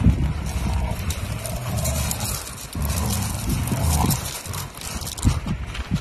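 Two Rottweilers playing close to the microphone: snuffling and breathing sounds, with their paws scuffing and crunching gravel, and a run of short scuffs over the last two seconds.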